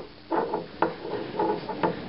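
Light, irregular clicks and taps of a small takli spindle with a brass whorl against a wooden tabletop, about half a dozen in two seconds, as cotton yarn is wound onto its shaft by hand.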